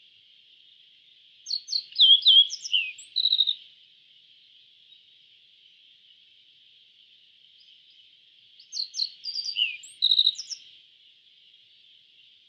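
Yellow-breasted bunting (Emberiza aureola) singing two song phrases about seven seconds apart. Each phrase is a quick run of clear, varied whistled notes lasting about two seconds, heard over a steady high hiss.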